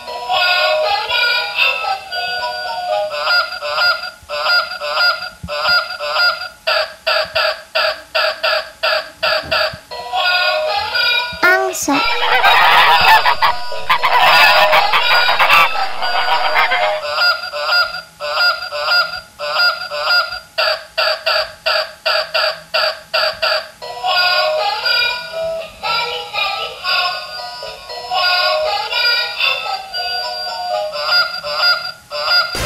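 Electronic sound chip of a walking toy swan playing goose honks over and over in quick rapid-fire runs, mixed with a synthetic tune. Near the middle the sound turns denser and louder for several seconds.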